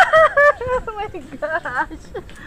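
A woman's high-pitched, frightened squeals and cries, several short ones with swooping pitch, ending in an "Ah!".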